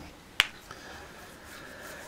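A single sharp click about half a second in as the tablet is handled, over quiet room tone.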